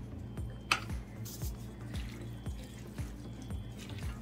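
A wooden spoon stirring moist fried cabbage in a metal skillet: wet squishing and scraping, with one sharp click less than a second in. Background music with a steady low beat plays underneath.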